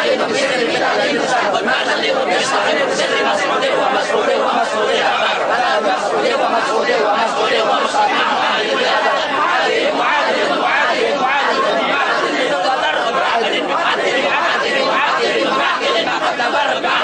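A congregation of men chanting Arabic Maulid verses in praise of the Prophet together, many voices overlapping into one dense, steady chorus.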